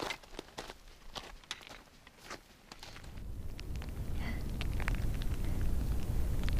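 Trekking-pole tips and boots clicking and knocking on loose scree rock in a steep climb, in scattered irregular strikes. From about halfway a low rumble of wind on the microphone builds up and covers them.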